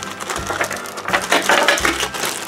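Thin clear plastic packaging bag crinkling and crackling irregularly as it is handled.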